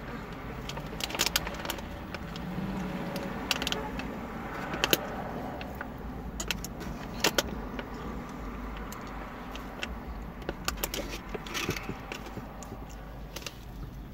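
Eating with a white plastic spoon from a foam takeout container: scattered sharp clicks and light scrapes and rustles, over a steady low hum in the car cabin.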